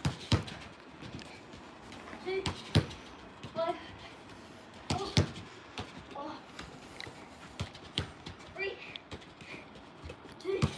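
A football being kicked against a wall and controlled on artificial turf: a sharp knock every two to three seconds, with faint voices between.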